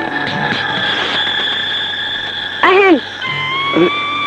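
Film background score of long held electronic tones, which shift to a new set of notes a little after three seconds in. A short, loud voice-like cry that rises and falls cuts across it shortly before that change.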